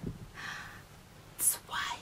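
A woman whispering a few short breathy phrases, with a sharp hissing consonant about one and a half seconds in.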